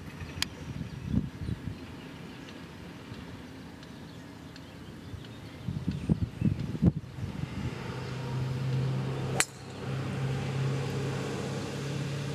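A golf club striking a teed ball: one sharp, very short crack about nine seconds in. A steady low engine hum sets in about a second before the strike and runs on under it.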